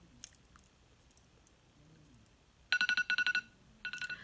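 Electronic phone alarm tone: a rapid run of high beeps starting near three seconds in, then a short second run just before the end. It marks the time being up for the hair-removal cream on her brow.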